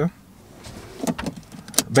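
Car seatbelt pulled across the body and buckled, with soft handling and rustling noises and then one sharp latch click near the end.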